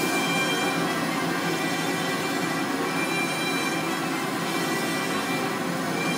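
Full symphony orchestra playing a loud, sustained tutti, with strings and brass holding a dense chord at an even level.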